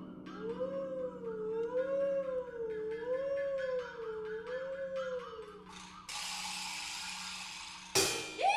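Contemporary chamber music for voice, harp and percussion: a single howl-like tone slides up, then wavers slowly up and down over a low sustained drone, fading out about six seconds in. A steady hissing wash of noise takes over for the last two seconds.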